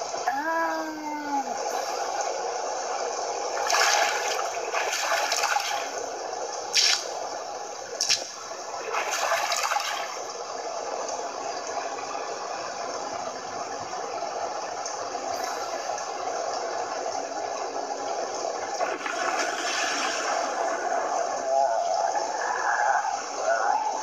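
Rushing water and storm sound effects from an animated flashback, played through a small handheld device's speaker, with several louder surges in the first ten seconds.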